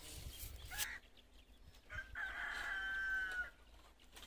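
A rooster crowing once, a single long call starting about two seconds in and lasting over a second. Before it, in the first second, there is a short stretch of rustling noise.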